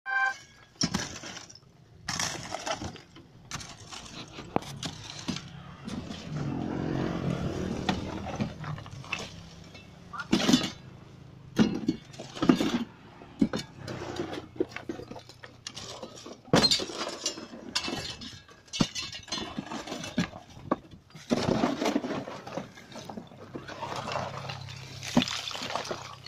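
Broken brick and concrete rubble being tossed out of a pickup truck bed, clattering and crashing onto a rubble pile in repeated irregular impacts.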